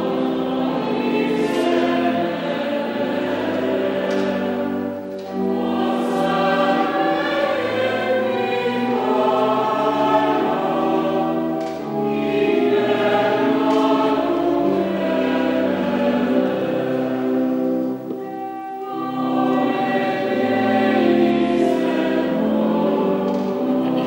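Choir singing in long sustained phrases, with brief pauses between phrases about every six seconds.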